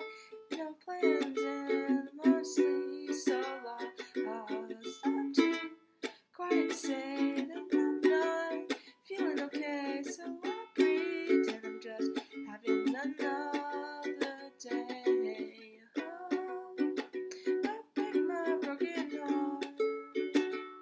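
Ukulele strummed in chords, with a woman singing along; the playing dips briefly a few times between phrases.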